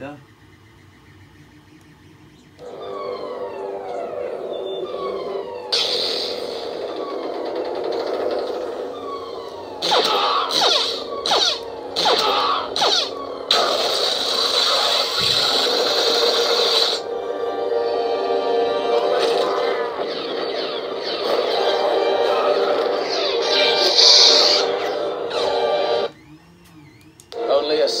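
Lightsaber sound board (Proffieboard) playing its sound font through the hilt's 28 mm bass speaker. The blade ignites a few seconds in and hums, with sweeping pitch glides and a burst of sharp crackling effects in the middle. It retracts near the end.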